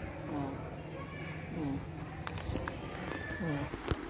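Faint distant voices over a low steady hum, with a few sharp clicks, the last just before the end.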